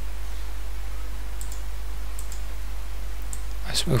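A few faint, separate clicks from working the computer, over a steady low hum.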